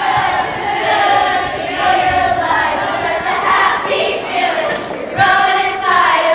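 A group of young voices singing together without instruments, with crowd noise mixed in.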